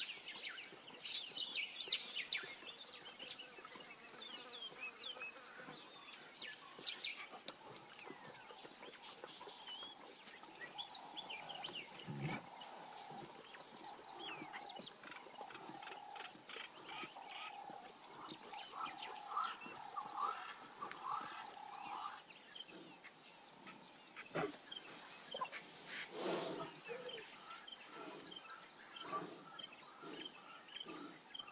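Wild birds chirping and calling, with a long run of evenly repeated mid-pitched notes through the middle. A few low, heavier sounds stand out near the middle and towards the end.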